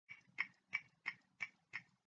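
Clock-ticking sound effect: six short, evenly spaced ticks, about three a second.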